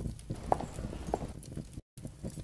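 Two or three faint, short knocks over low background noise between lines of narration, broken by a moment of dead silence near the end.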